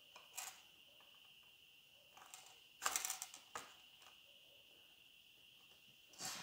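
Faint rustles and clicks of hands handling a leather wallet, loudest in a short cluster about three seconds in, over a faint steady high-pitched whine.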